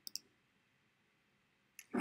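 Two quick computer mouse clicks, a tenth of a second apart, at the start.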